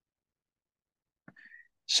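Dead silence for over a second, then a faint click and a short breath, and a man starts to speak ("So") near the end.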